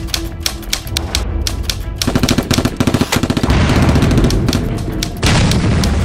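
Intro music cut with rapid-fire trains of sharp crackling hits, a stuttering glitch-style sound effect, running in bursts through the whole stretch.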